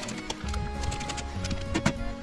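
Background music with sharp clicks from a socket ratchet tightening the excavator's cover bolts, and a louder metallic knock near the end as the ratchet is set down on the steel cover plate.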